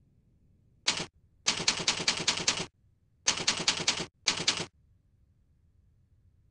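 Typing: rapid keystroke clicks in four short runs, as a line of text is typed.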